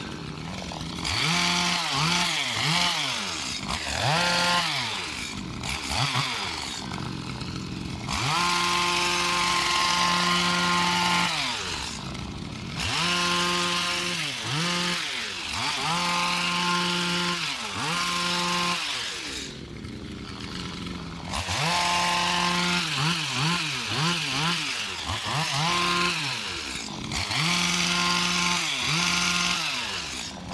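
Stihl FS85 two-stroke trimmer engine driving a hedge trimmer attachment through shrubs, its throttle opened and eased off over and over. The engine sweeps up and down in speed, held at full speed for a few seconds at a time while cutting, then dropping back before the next pass.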